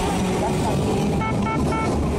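Nagasaki streetcar running past at close range: a steady low rumble of its motor and wheels on the rails. Three short high beeps come in quick succession near the end.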